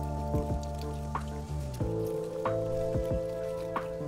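Background music: held chords that change about two seconds in, with short sharp plucked or dripping notes over them.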